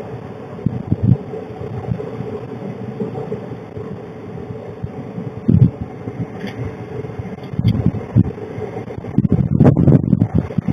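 Wind buffeting an outdoor security camera's microphone in irregular gusts of low rumble, over a steady low hum.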